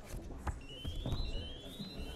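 House of Representatives division bells: an electronic alarm tone that climbs in small steps, repeating about every 0.6 s and starting about half a second in. It is the signal summoning members to the chamber for a vote.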